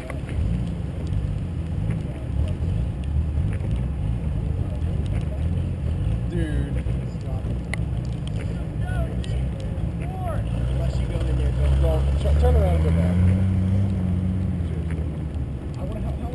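Car engine running under load in deep snow, a steady low drone that rises in pitch about twelve seconds in and eases off near the end, as the car struggles in snow too deep for it.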